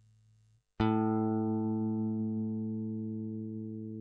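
Electric guitar with a Wilkinson WOV04 tremolo, fitted with the thick pot-metal block, sounding one plucked low note less than a second in. The note rings on with a slow, even decay. Just before it, the faint tail of an earlier note cuts off.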